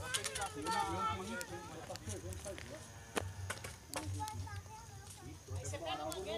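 Indistinct voices talking, with a few sharp clicks among them.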